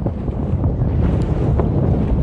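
Wind buffeting the microphone aboard a moving motorboat: a steady low rumble mixed with the sound of the boat running over the water.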